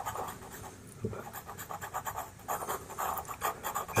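Pastel pencil scratching on pastel paper: a Faber-Castell Pitt pencil shading in short, soft strokes, a little over one a second.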